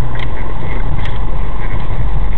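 Steady, loud rumble of a car's engine and tyres on the road, heard from inside the cabin while driving.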